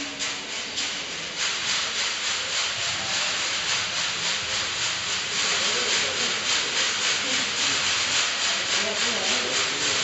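Several ocean drums tilted back and forth, the beads inside rolling across the drumheads in a steady, surf-like hiss that swells up about a second and a half in.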